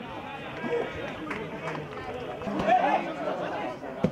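Footballers and spectators calling out over one another during play, with one loud call about two and a half seconds in.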